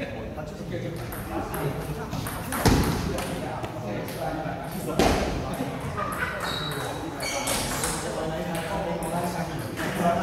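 Table tennis ball clicking off rubber paddles and the table during a rally, with two louder sharp hits about two seconds apart near the middle, over voices chattering in a large hall.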